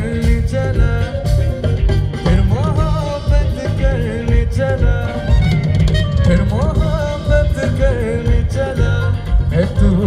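A live band playing through a stage sound system, with guitars and drums under a male singer's melody that glides and wavers.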